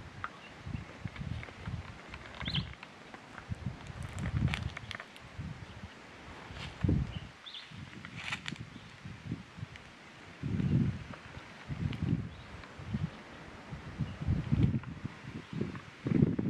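Irregular low rustles and soft thuds of movement close to the microphone in dry bush, with a few sharp clicks and a few faint, brief bird chirps.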